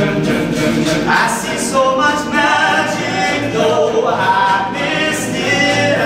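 An all-male a cappella group singing in harmony: voices holding chords, with a melody line moving above them.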